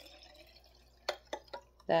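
Water poured from a glass measuring cup into a glass jar: a faint trickle that tails off, then three quick drips about a second in.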